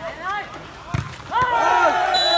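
A volleyball struck hard with a sharp smack about a second in, followed at once by loud shouting voices from players and onlookers.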